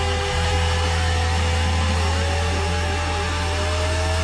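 Live rock band holding a sustained drone: a few held amplifier-feedback tones that slide slowly in pitch over a loud, steady low bass rumble, with no beat or chords.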